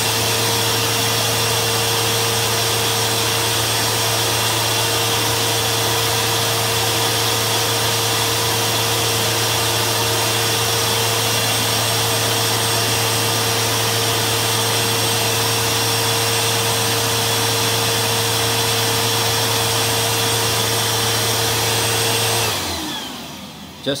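Eureka Lightspeed 4700 upright vacuum cleaner running with its filter removed, a loud, steady motor whine over a low hum. It is switched off about 22 seconds in and its motor winds down.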